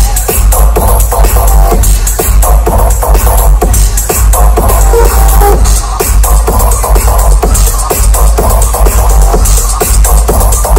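Electronic dance music played very loud over a live festival sound system, with heavy bass and a steady kick-drum beat.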